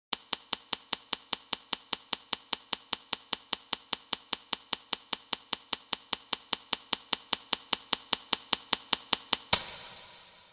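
Game-style sound effect of Othello discs being placed one after another: a rapid, even run of sharp clicks, about five a second. Near the end a single louder hit rings off.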